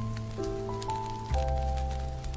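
Smooth jazz piano playing soft sustained chords, changing chord about half a second in and again near the middle, over a steady layer of scattered light ticks that sounds like rain ambience.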